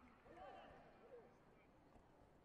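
Faint, distant voices shouting in a large sports hall, heard over a low hush.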